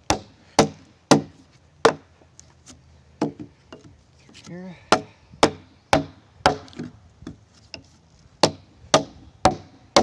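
Framing chisel struck with a mallet, chopping out a mortise in a hewn timber beam: sharp wooden knocks about two a second, in runs of four with short pauses between.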